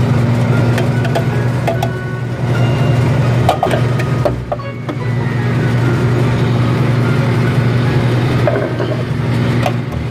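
A steady low motor hum runs throughout. A few short knocks and scrapes sound as a carpet cleaning machine's metal debris tray is emptied of carpet fibre and pet hair.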